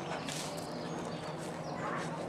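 Horse's hoofbeats on a sand arena surface as it canters.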